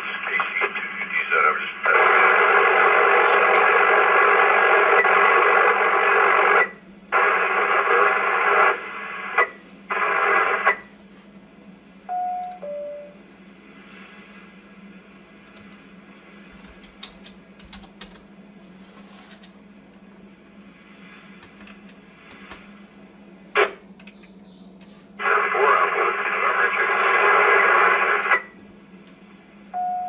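Ten-meter radio receiving over a repeater: loud, garbled, unintelligible transmissions with the narrow, tinny sound of a radio speaker, in several bursts. After the first and last bursts comes a short two-note beep, falling in pitch, typical of a repeater courtesy tone. Between transmissions there is a quiet static hiss.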